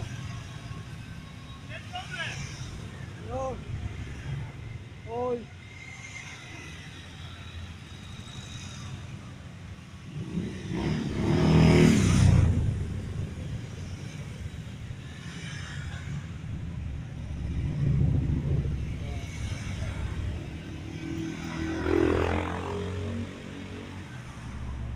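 Motorcycles riding slowly past one after another, each engine swelling as it nears and fading as it goes; the loudest pass-by comes about halfway, with two more swells toward the end.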